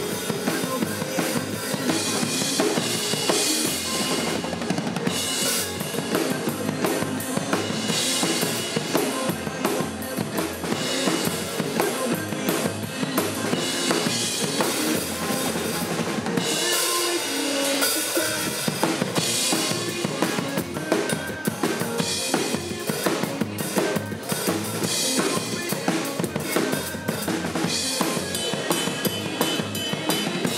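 Acoustic drum kit played live in a pop drum cover, with kick, snare and cymbals driving a steady beat over the song's recorded backing track. About 17 seconds in there is a short break where the low end drops out before the full groove returns.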